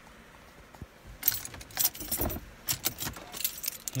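A bunch of car keys on a ring, with a key fob, jingling as they are taken out and handed over. The jingling starts about a second in, as a run of small metallic clinks.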